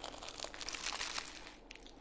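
Flaky baked pastizzi pastry crackling and crunching as it is bitten into and chewed: a dense run of fine crisp crackles, strongest in about the first second, then thinning out.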